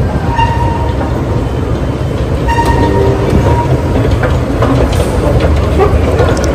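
Steady low rumble of a metro train in an underground station, with a short steady whining tone heard twice, once near the start and once about halfway through.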